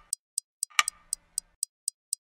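Clock ticking sound effect: light, high ticks about four a second, with a heavier tock about once a second.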